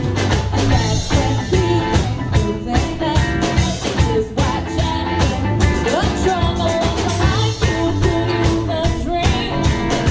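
A rock band playing live: electric guitar, bass guitar and drum kit, with a woman singing into a microphone over them.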